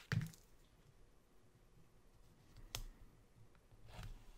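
Quiet handling of planner stickers and paper: a soft thump right at the start, then a single sharp click a little under three seconds in, as a sticker is pressed onto the planner page.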